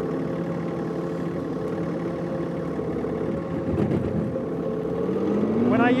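John Deere 3046R compact tractor's three-cylinder diesel engine running steadily while the loader bucket pushes snow, its pitch rising slightly near the end.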